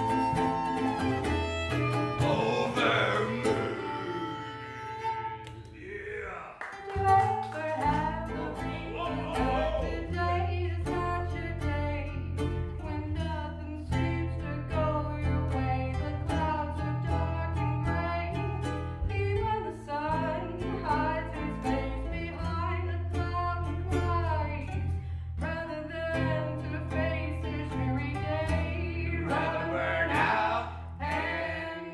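Acoustic folk band playing live: a violin melody at the start, then sung vocals from about seven seconds in over strummed acoustic guitar and a steady bass line.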